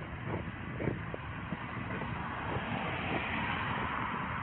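Street traffic noise as heard through a body-worn camera's microphone, building in the second half as a car passes close by. The camera's wearer walks, and short soft knocks from footfalls and the camera rubbing on clothing come about every half second.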